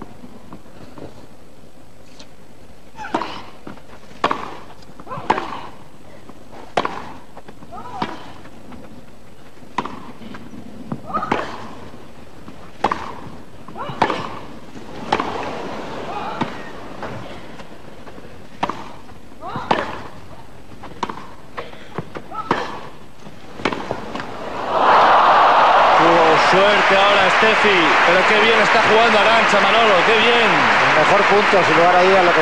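Tennis rally on a grass court: the ball is struck back and forth about once a second for some twenty seconds. Near the end the crowd breaks into loud applause and cheering as the point is won.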